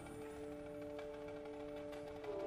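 Indoor percussion ensemble music: a soft, steady chord of a few held tones, with no strikes.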